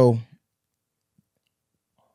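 A man's voice trailing off on a word at the very start, then dead silence with a single faint tick about a second in.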